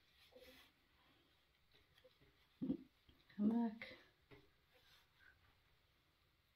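Faint handling of nylon shorts fabric as a drawstring threader is worked through the waistband casing. About three seconds in there is a short wordless vocal sound, like a hum or mutter.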